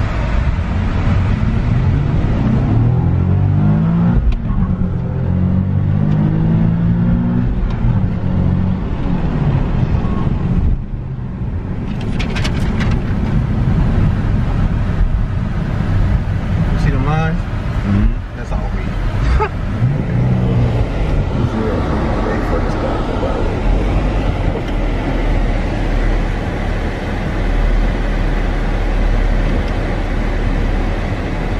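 A Nissan 370Z's V6 engine, heard from inside the cabin, rising and falling in pitch several times as the car is accelerated and shifted through the gears of its manual gearbox. Steady road and cabin rumble sits underneath.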